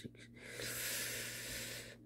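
A person letting out one long breath, a sigh-like hiss lasting about a second and a half.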